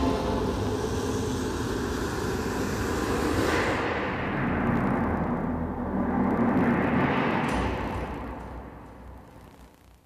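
Hemdale Home Video logo sound effect: a loud rumbling whoosh that holds for several seconds, surges again about seven and a half seconds in, and fades away near the end.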